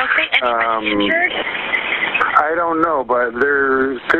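Speech over a police radio or telephone line, with a short stretch of static hiss between phrases.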